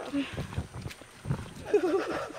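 A person's voice in short utterances, with a few low thuds in the gap between them.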